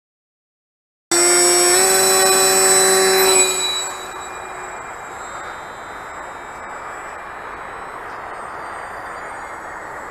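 Brushless electric motor (FirePower 10 3535 1500kv) and Scimitar 8x6 propeller of a TowerHobby CraZe Wing flying on a 4S battery. About a second in it comes in loud with a high whine rising slightly in pitch, then after about two and a half seconds drops away to a quieter steady drone with the wing far off.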